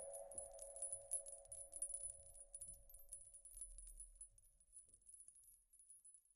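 A faint sustained chord fades out as the song's outro dies away, stopping about five seconds in, with a scatter of faint, high, tinkling clicks over it.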